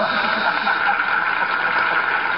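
Studio audience laughing and applauding: a steady, loud wash of clapping and laughter in reaction to a joke answer.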